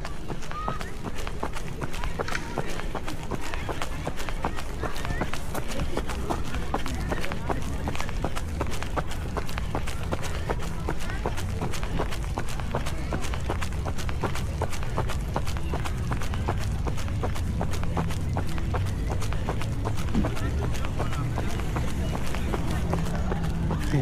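A trail runner's footsteps jogging on a paved path, a quick even run of footfalls over a steady low rumble.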